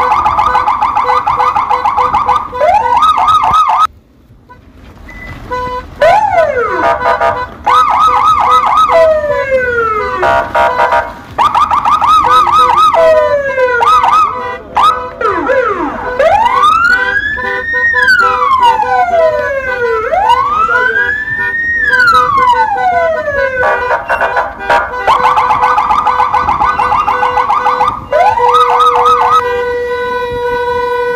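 Electronic siren working through its tones: fast warbling trills alternating with long rising-and-falling wails and quick whooping sweeps. It breaks off briefly about four seconds in.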